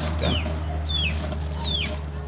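Chickens calling: several short, high calls that fall in pitch, about one every half second, over a steady low hum.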